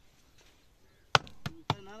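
Two sharp knocks of a wooden block struck against the pump's spoked pulley wheel, a little over a second in and about a third of a second apart, then a man's voice begins.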